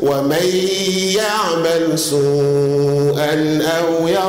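A man's voice reciting Quran in Arabic in a melodic chant (tajweed) into a microphone, holding long notes with an ornamented turn about a second in.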